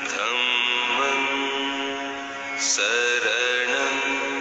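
A voice chanting a slow Buddhist mantra in long held notes over a steady drone. New phrases begin at the start and again about three-quarters of the way through.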